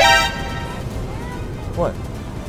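A short, loud, horn-like blast right at the start, lasting about half a second, over background music. Near the end a woman says 'What?'.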